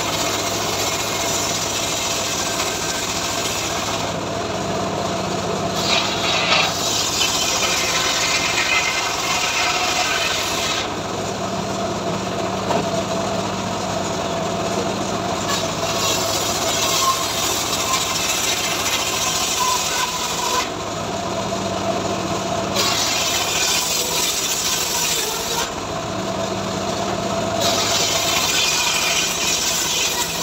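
A homemade engine-driven circular saw bench (srekel) cutting a mahogany slab into boards: a steady machine hum runs throughout, and the blade rasps loudly through the wood in four long passes of several seconds each, easing back to the free-running whir between cuts.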